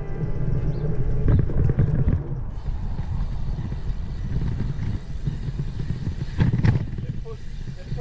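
Ride noise from a bicycle-mounted camera's microphone: a steady low rumble of wind and rolling, with a couple of short sharp knocks, about a second in and again later.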